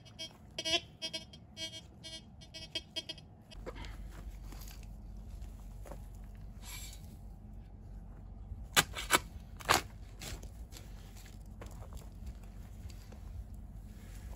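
TX 850 metal detector sounding a rapidly pulsing signal tone over a buried target for about three seconds. Then a spade digs into the soil, with a few sharp strikes and scrapes about nine seconds in.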